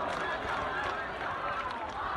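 Large protest crowd: many voices talking and calling out at once in a steady din, with no single voice standing out.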